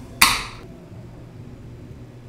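Aluminium beer can of a double New England IPA cracked open by its pull tab: one short, sharp pop and hiss of escaping carbonation, fading within about half a second.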